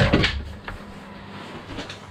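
Skis being handled in a wooden ski locker: one loud knock and a short clatter at the start, then a steady low hum.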